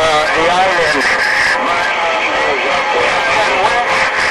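A distant station's voice received over a CB radio, coming through the speaker warbly and hard to make out under a steady hiss of band noise.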